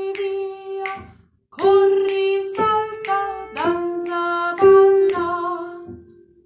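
A woman singing a simple stepwise children's melody in held, even notes, with a breath about a second in. Sharp clicks mark the beat about twice a second.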